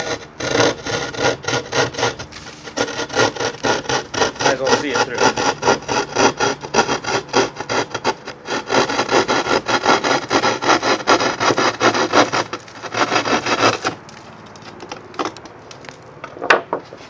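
Drywall knife sawing through a sheet of drywall with rapid back-and-forth rasping strokes, several a second, stopping about two seconds before the end as the cut is finished.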